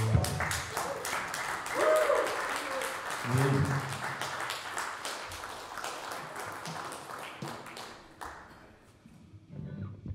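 Audience applauding after a song ends, with a few voices calling out in the first few seconds. The clapping thins and fades out, and the band's electric guitar starts the next song at the very end.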